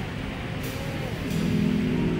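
Live band starting to play: instruments come in softly, then a sustained chord enters about a second in and swells.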